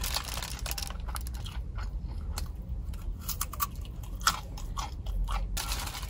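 Close-up eating of a Chinese flatbread burger stuffed with tofu skin, sausage and lettuce: a crunchy bite at the start, then steady chewing full of small crunches and mouth clicks, with another louder crunchy stretch about five seconds in.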